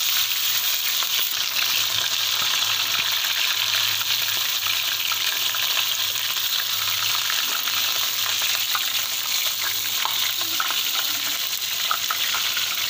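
Pieces of raw fish sizzling steadily as they shallow-fry in hot oil in a frying pan.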